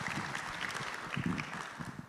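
Congregation applauding, the clapping thinning out and dying away toward the end.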